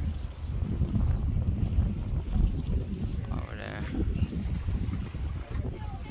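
Wind buffeting the phone's microphone at open water, a gusting low rumble. A brief faint wavering call or voice comes midway.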